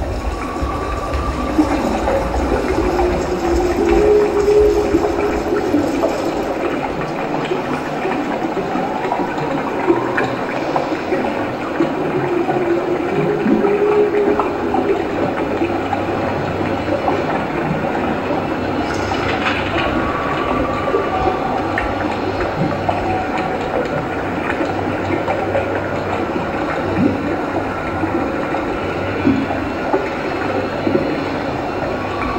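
A steady rushing, rumbling noise with a few long wavering tones over it, a recorded sound-effects backing track resembling a train.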